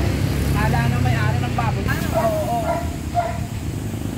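Indistinct voices of people talking over the low, steady hum of a vehicle engine, which fades out about two seconds in.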